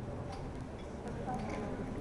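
Indistinct murmur of many people talking at once in a crowded hall, with a few faint clicks.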